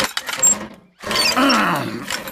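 Cartoon sound effect of a rusty push reel mower rattling as it is shoved forward; the rattle fades within a second. Then comes a long, strained groan that falls in pitch as the mower sticks in the long grass.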